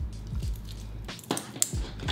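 A few soft clicks and handling noises as a smartwatch and its sport band are handled and fitted, over faint background music.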